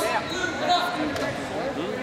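Indistinct voices in a gym hall, with two short sharp knocks around the middle.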